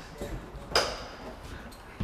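Footsteps and handling knocks as someone steps up into a caravan body under construction: a few dull low thumps, then one short sharp clack with a brief high ring just under a second in.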